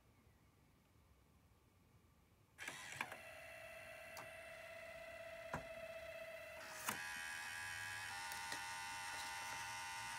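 Slot-loading CD drive of an iMac G3 starting up about two and a half seconds in: a steady motor whine with scattered clicks, shifting to a different, louder whine after a sharp click about seven seconds in. The drive is struggling with the disc, its eject motor weak and, as the owner puts it, about on its last legs.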